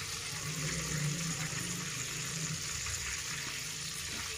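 Whole fennel seeds and green cardamom pods sizzling steadily in hot ghee: a soft, even frying hiss.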